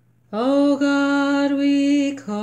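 A woman singing unaccompanied, in a slow chant, holding long steady notes. The singing begins about a third of a second in with a short upward scoop into the first note.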